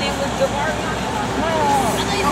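Road traffic passing on a wet street, a steady hiss of tyres and engines, with girls' voices and laughter close by.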